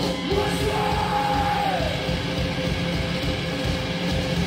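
Loud live mathcore band playing: heavy distorted guitars and pounding drums, with a shouted vocal over them.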